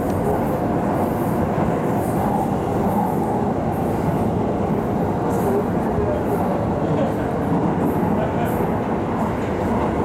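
Steady running noise heard from inside a moving vehicle: an even rumble and hiss with no breaks.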